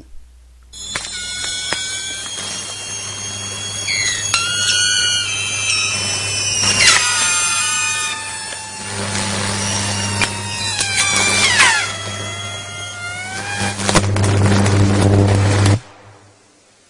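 Electrical arcing where a stick lies across live overhead power lines: a continuous buzzing hum with crackles and high whines that glide and shift in pitch. It swells from about halfway, is loudest near the end, and then cuts off suddenly.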